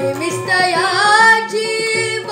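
A boy singing a Marathi gawalan, a devotional song, over instrumental accompaniment. About halfway through, the sung note rises and wavers.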